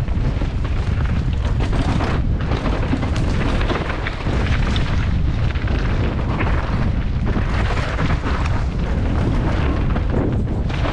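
A downhill mountain bike ridden fast down a rough dirt track: a continuous heavy rumble of wind buffeting the action-camera microphone, with a dense clatter of knocks from the tyres, chain and suspension over the bumps.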